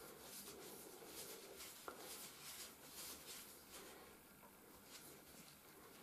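Near silence: faint, soft rubbing of oiled hands kneading a bare foot and big toe.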